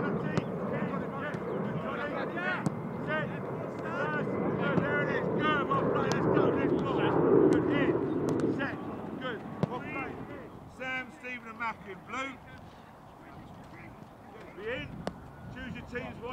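Voices calling across a grass training pitch, with a few sharp thuds of a football being struck, about three in all. A low rumbling noise fills the first ten seconds, swells in the middle, then falls away.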